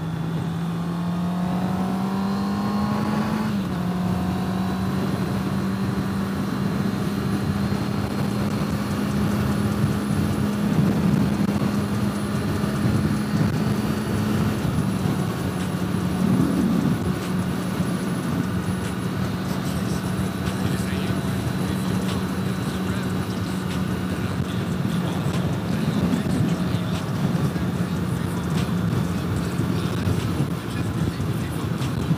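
Motorcycle engine running at road speed, heard from a helmet-mounted camera under heavy wind noise. The engine note rises for the first few seconds, drops suddenly at a gear change about three and a half seconds in, then holds steady.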